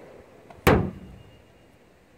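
A pickup truck door slamming shut once, a single sharp thump that fades within a fraction of a second.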